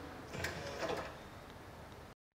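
Quiet room tone, with a brief faint mechanical sound and light ticks starting about half a second in and lasting under a second.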